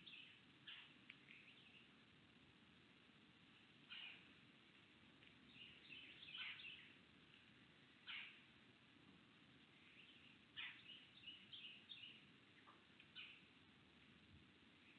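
Faint songbird calls: short, sharp calls that drop quickly in pitch, about eight of them at irregular intervals, with bits of twittering in between.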